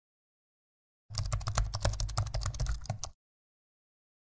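Keyboard typing: a fast run of key clicks lasting about two seconds, starting about a second in and stopping abruptly.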